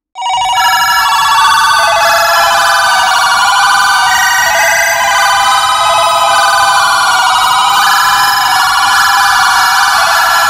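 Experimental electronic music: a loud stack of high, ringing synthesizer tones with no bass, starting abruptly out of silence and stepping between pitches every second or two.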